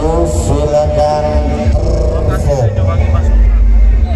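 Large carnival sound system playing very loud music with heavy bass, a voice carried over it for the first two and a half seconds; the bass grows stronger near the end.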